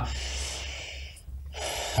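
A man breathing audibly close to a studio microphone during a pause in his speech. There is one longer breath, then after a short gap a second, shorter breath just before he speaks again.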